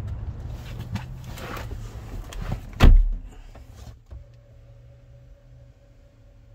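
Getting into a 2020 BMW X5 through the driver's door: rustling and handling, then the door shutting with one loud thud about three seconds in. After the thud the outside noise drops away to a quiet, steady cabin hum.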